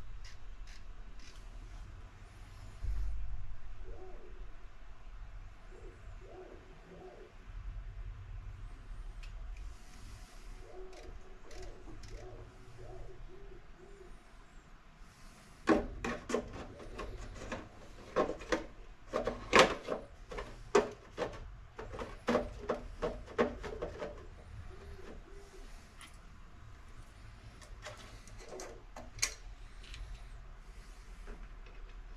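Handling of an RC rock crawler's hard plastic body on a workbench: a run of sharp clicks and taps as the body is set back onto the chassis, loudest in the second half, over a low steady hum.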